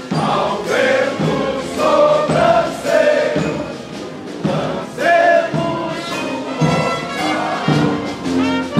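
A group of men singing a marching song together in unison, with held notes that change pitch every half second or so.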